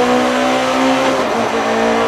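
Rally car engine heard from inside the cockpit, holding a steady note under load while the car drives the stage, with a slight waver in pitch about halfway through.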